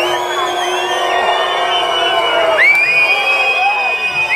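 A crowd shouting and whooping, many voices overlapping, with long held high calls.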